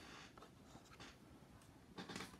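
Faint handling of a trading card in a hard plastic holder as it is lifted off a wooden display stand: a soft scrape at the start, then a few light ticks.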